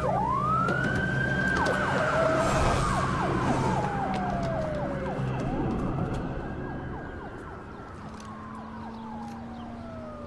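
Ambulance siren wailing in two slow sweeps, each rising quickly and then falling slowly, over a vehicle engine running low underneath. The engine drops away about seven seconds in, and the siren grows fainter through the second half.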